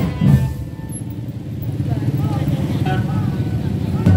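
A marching drum band's drums strike in the first half second, then pause. In the pause a motorcycle engine runs nearby, with people's voices around it.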